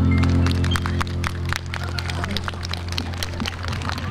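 A Hawaiian band's final chord on guitars and ukulele ringing out and fading over the first couple of seconds, as the audience claps.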